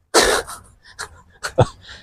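A man's short, breathy exhale of laughter, one loud huff of breath, followed by a few faint clicks.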